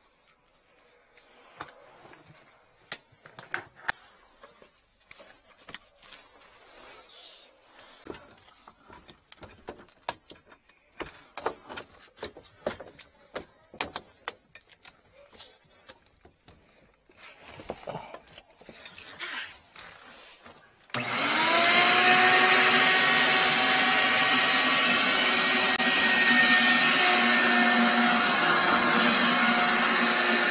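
Scattered clicks and knocks of pipe fittings and tools being handled. Then, about two-thirds of the way in, a wet/dry shop vacuum switches on suddenly and runs steadily with a whining motor, used as suction to clear a blocked sink drain pipe.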